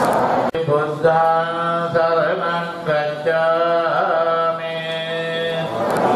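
Buddhist devotional chanting: a moment of the congregation chanting together, then a sudden cut to a single man's voice chanting alone in long, steady held notes, phrase after phrase, with short breaks between them.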